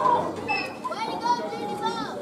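Chatter of several young voices overlapping, with no music playing.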